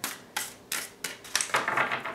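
Tarot cards being handled: sharp snaps and taps of cards about three times a second, then a quick run of rapid clicks near the end, like cards riffled or flicked through the deck.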